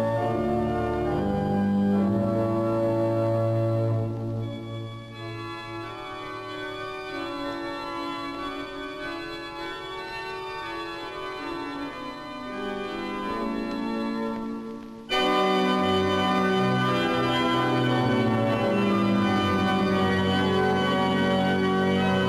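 A newly built Casavant pipe organ playing sustained chords during its musical test. It plays full at first, turns softer about four seconds in, then comes back suddenly loud about fifteen seconds in.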